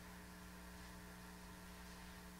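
Near silence: a steady electrical hum under faint room tone.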